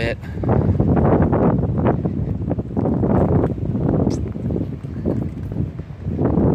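Wind buffeting the microphone: a loud, uneven low rumble that swells and drops irregularly.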